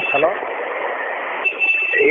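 Recorded phone-call audio, narrow and hissy like a telephone line, with a voice trailing off at the start and a steady high tone near the end.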